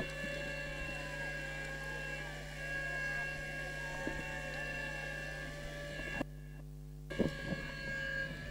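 A steady low electrical hum with faint, steady high whining tones, the sound of an open commentary microphone and sound system between calls, with faint indistinct wavering sounds underneath. About six seconds in, the sound drops out almost entirely for about a second.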